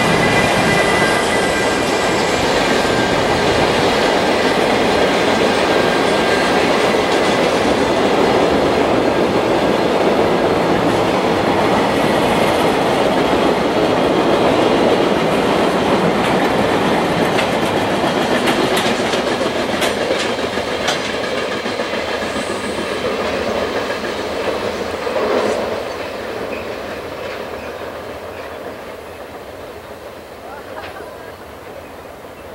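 A long container freight train hauled by a JR Freight EF210 electric locomotive passing at speed. A high whine fades over the first few seconds, then the wagons give a steady rumble with clickety-clack from the wheels, and the sound dies away over the last few seconds as the train recedes.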